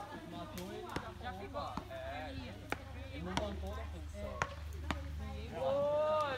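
A volleyball being struck again and again in an outdoor game: sharp, short smacks about half a second to a second apart, with voices talking in the background.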